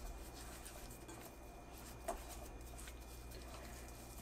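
Faint squelching and rubbing of a hand working dry spice rub into raw pork ribs in a glass bowl, with a light tap about two seconds in, over a low steady hum.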